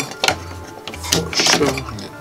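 Clicks and rattling of a USB cable and its plug being handled and pushed into a power source on a workbench.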